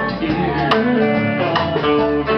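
Live honky-tonk country band playing an instrumental passage: guitar, upright bass, drums and keyboard.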